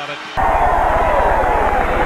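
Stadium crowd noise on an old football game broadcast, with a steady low hum underneath, starting abruptly about a third of a second in.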